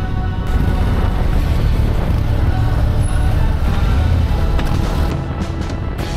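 Background music over the low rumble of a 2024 Harley-Davidson Street Glide's V-twin and wind noise at road speed.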